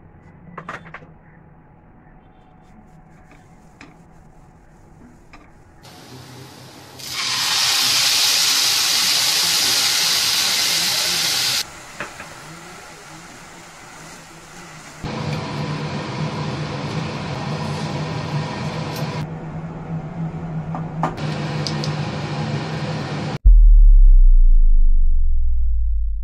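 A plastic spoon stirring and scraping grated coconut in a nonstick kadhai, with light scrapes at first. After about seven seconds comes a loud, steady hiss of cooking that lasts about four seconds, then steadier frying noise with a low hum. Near the end a loud, deep sound cuts in.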